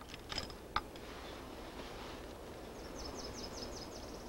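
Quiet woodland ambience with a steady faint hiss. A few small clicks come in the first second, and near the end a bird gives a quick run of about eight high chirps.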